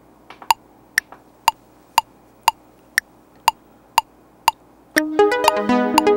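Korg Kronos sequencer metronome clicking a count-in at 120 BPM, two clicks a second. About five seconds in, a synthesizer on the recording track starts playing a run of overlapping notes over the continuing clicks.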